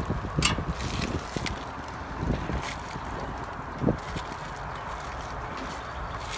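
Handling sounds of Bondo body filler being packed by gloved hands into a wooden form: plastic rustling and scattered clicks, with a few soft knocks. There is steady background hiss throughout.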